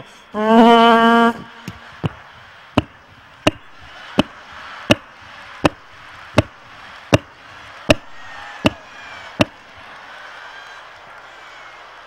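A man's loud, held vocal cry, then about a dozen sharp knocks at an even beat, one every three-quarters of a second or so, over a theatre audience laughing.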